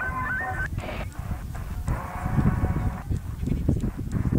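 Sangean ATS-909 portable radio tuned across the medium-wave band: a snatch of music, then crackling static and garbled, overlapping station audio as it steps from frequency to frequency.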